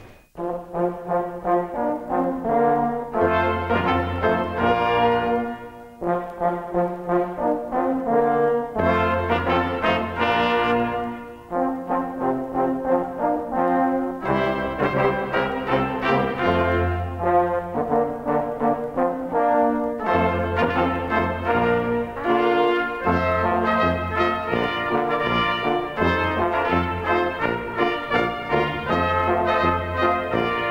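A miners' band brass ensemble of trumpets and horns plays a traditional miners' melody in harmony over a bass line. The music breaks briefly between phrases about six and eleven seconds in.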